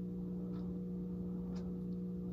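Steady low hum of room noise, with a few faint light ticks from fingers handling an Apple Watch while pressing and holding its side button.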